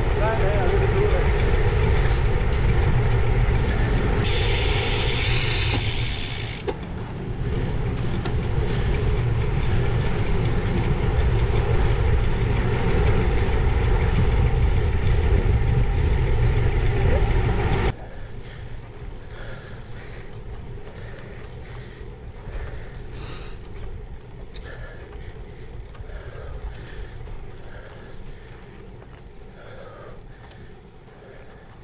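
Wind buffeting the microphone of a bike-mounted camera while cycling, a heavy, low rushing noise. About eighteen seconds in it cuts abruptly to a much quieter stretch of the same ride noise.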